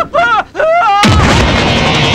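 A man yelling in short cries that rise and fall in pitch, then about halfway through a sudden loud burst leads straight into loud, heavy fight music.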